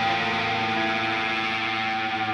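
Distorted electric guitars holding a steady, droning chord in an alternative rock recording, with no drum hits.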